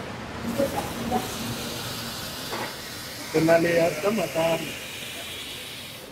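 A steady hiss that lasts several seconds and fades near the end, with a voice breaking in briefly around the middle.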